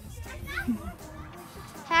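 Faint, indistinct child's voice murmuring, with a loud sung note from children starting right at the end.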